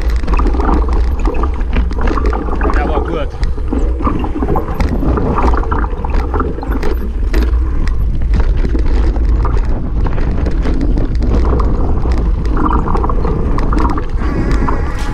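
Wind buffeting a bike-mounted action camera's microphone with a steady low rumble, over the rattle of a mountain bike descending a rocky trail: tyres crunching on loose stones and many sharp clicks and knocks from the chain and frame.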